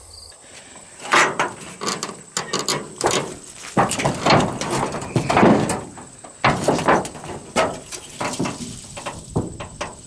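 Corrugated tin sheets being lifted, flipped and dropped: an irregular run of metallic clanks, knocks and scrapes.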